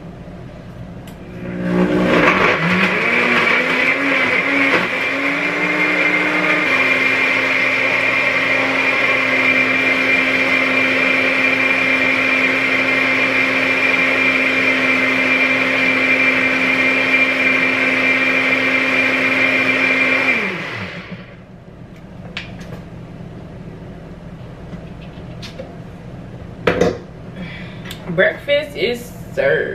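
Countertop blender blending a fruit smoothie: the motor speeds up over the first few seconds, runs steadily for about twenty seconds, then winds down and stops. A few knocks follow near the end.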